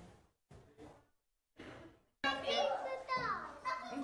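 About two seconds of near silence, then voices at a children's birthday party: talking, with children's voices among them.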